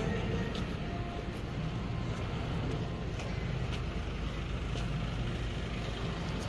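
Steady low engine hum of an idling large vehicle, with a few faint light clicks over it.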